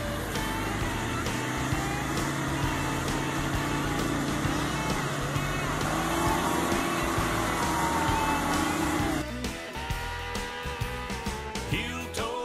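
Polaris Ranger XP side-by-side engine running under load as it churns through deep mud, its pitch rising and falling slowly with the throttle. About nine seconds in, it gives way to a country song.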